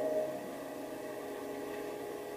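A piano chord dying away in the first half second and ringing on faintly in a pause, over a light hiss.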